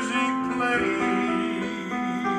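Electric keyboard playing slow, sustained chords as a song accompaniment, the held notes changing every half second or so.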